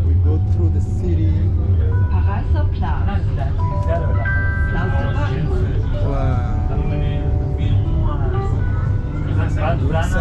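Steady low rumble of a moving city tram heard from inside the car. Voices and a few short held electronic tones sound over it.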